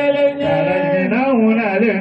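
Men's voices chanting a religious song, a held note followed by a winding, ornamented melodic turn near the end.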